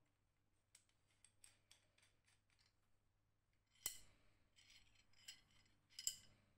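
Faint metallic clicks and short scrapes of brass fittings being threaded onto and slid along a steel rod by hand, with one sharper click about four seconds in.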